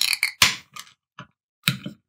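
Pull tab of an aluminium beer can being cracked open: a run of sharp clicks with a brief hiss, the loudest snap about half a second in, then a few smaller clicks and knocks.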